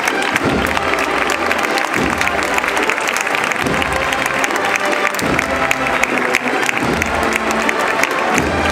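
A crowd applauding while a procession band plays steady music beneath the clapping.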